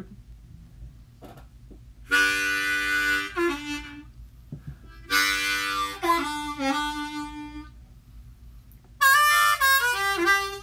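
Hohner ten-hole diatonic harmonica played in three short phrases, each opening with a loud held chord that breaks into single notes; the last phrase, near the end, is higher in pitch.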